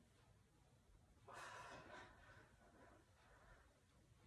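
Near silence, with one faint breath out, a soft noisy puff about a second and a half in, from a woman exerting herself in an ab exercise.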